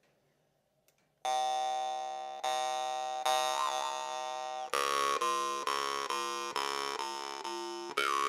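Mid-range Yakut khomus (a steel jaw harp made by Tarabukin) plucked, starting about a second in: a buzzing drone with ringing overtones that glide as the mouth changes shape. The plucks come slowly at first, then quicker in the second half.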